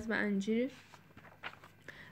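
A woman's voice reading aloud says a short word, then pauses. The pause is quiet apart from a few faint short clicks.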